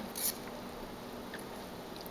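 Low steady room hiss with faint handling of soft, wet sugar apple flesh being pulled apart by fingers, including a short soft noise just after the start.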